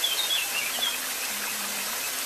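Thin streams of water falling over a rock face and splashing onto wet stone: a steady rush. A small bird chirps several times in the first second.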